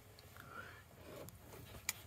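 Faint handling noise as a plastic cap is threaded onto a car's A/C service port by hand, with a small click near the end.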